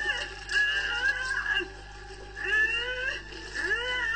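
Cartoon soundtrack: background music with a series of short, wavering high-pitched vocal sounds, about four in a row.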